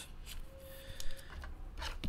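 Faint rubbing and sliding of trading cards handled between the fingers, with a soft click about a second in.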